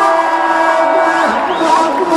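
Live band music: a loud, sustained chord held steady, joined past the middle by a wavering melody line.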